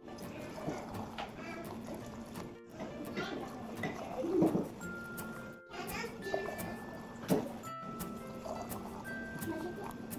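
Hot dandelion jelly pouring from a stainless steel pot through a metal canning funnel into glass canning jars, with a few sharp clinks, the loudest about halfway through. Quiet background music and children's voices run underneath.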